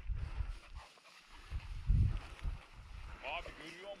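Wind buffeting the microphone in uneven low gusts, loudest about two seconds in, with a short distant voice near the end.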